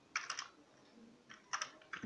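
Computer keyboard typing: two short bursts of a few quick keystrokes, about a second apart.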